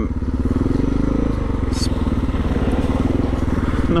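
Dual-sport motorcycle engine running steadily under way on a gravel road, heard from the rider's own bike, with a brief hiss just under two seconds in.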